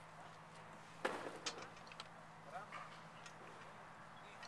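A sharp metallic clank about a second in, followed by a brief rattle of smaller knocks, as a steel wheelbarrow is taken up and moved. A low steady hum and a few faint distant voice fragments lie underneath.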